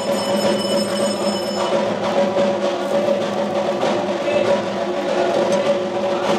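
Devotional arati music: drums beating in a fast, dense rhythm over a steady drone, with a metallic bell-like ring in the first two seconds.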